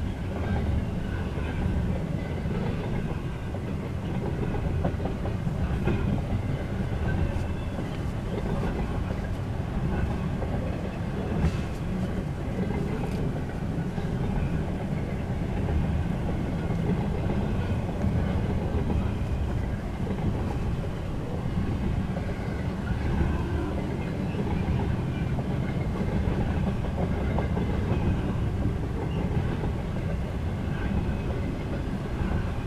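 Freight train cars rolling past at steady speed: a continuous rumble of steel wheels on rail that stays even throughout.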